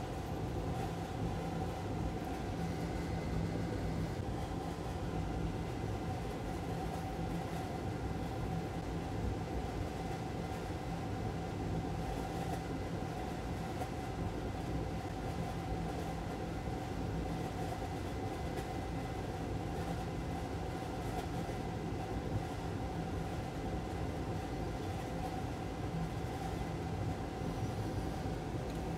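Steady hum of a small motor: a constant mid-pitched whine over a low drone, unchanging throughout.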